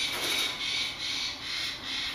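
Soft rubbing and rustling from a hand stroking a green-cheeked conure's feathers among fleece cage toys, with a faint repeated swell.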